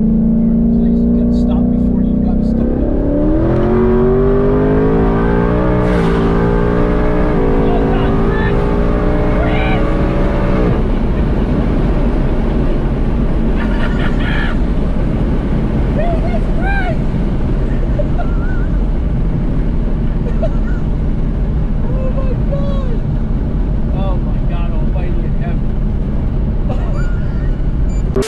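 Car engine heard from inside the cabin, held at steady revs for a couple of seconds, then launched at full throttle. Its pitch climbs and drops back several times as it runs up through the gears for about eight seconds. After that the engine fades under a steady loud rush of road and wind noise, with a passenger shouting and laughing.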